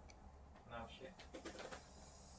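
Faint low bird calls over near silence in the room: one short call just under a second in, then a few shorter ones later on.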